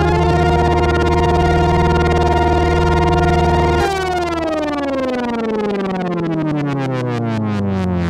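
Polyphonic analog synthesizer chord from a Moog Little Phatty driving a chain of Slim Phatty voices: several notes glide up into place and are held. About four seconds in it switches abruptly to a new chord whose notes slide steadily down in pitch.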